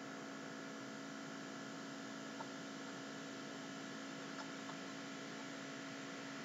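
Steady electrical hum made of several constant tones over faint hiss, with a few faint ticks.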